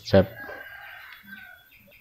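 A chicken calling faintly, one drawn-out call lasting about a second and a half.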